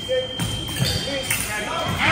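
Fencers' feet thudding on the piste over a gym floor as they advance and lunge, about four dull thuds, with voices chattering in the hall.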